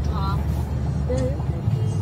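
Steady low drone of engine and road noise inside the cabin of a 2020 Nissan Navara 4x4 pickup on the move; the drone steps up in pitch near the end.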